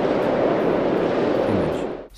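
A steady, loud rumbling ambient drone with no clear pitch or beat, fading out just before the end.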